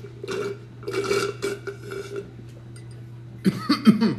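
Sucking up the last of the juice through a straw in a glass jar: a few noisy slurping draws in the first two seconds. Near the end comes a short burp of several low pulses sliding in pitch, the loudest sound here.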